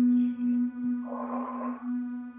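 A steady drone held on one low pitch with a rich, even set of overtones. A soft breathy whoosh comes and goes about a second in.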